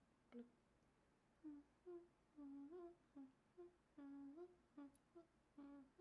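A woman humming a short tune softly with her mouth closed: a run of brief notes and a few longer held ones that step up in pitch, starting about a second and a half in.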